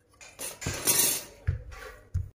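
Thin fluted metal tartlet moulds being handled on the worktop: a short metallic clatter, a knock a little after the middle, and a smaller knock near the end.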